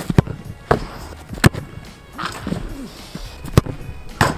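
Several sharp, separate thuds of a football being struck and bouncing, the loudest about a second and a half in, over background music.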